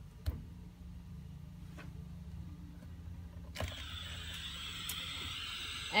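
Hot air rework station's air flow switched on about three and a half seconds in: a click, then a steady hiss of air through the nozzle with a thin high tone, over a low hum.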